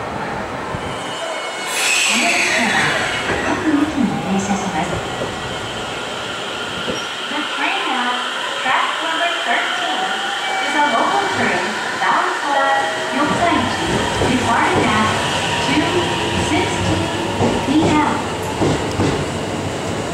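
A two-car JR 313-series electric train pulling away from the platform: its running and wheel noise comes up about two-thirds of the way in and carries on as the cars pass. Platform announcements are heard over it in the middle.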